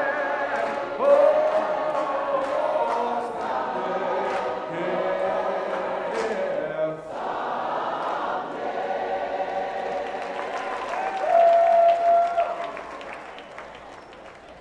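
A cappella choir singing a gospel song, with some clapping in the first half. The singing ends on a long held note that stops about a second before the end.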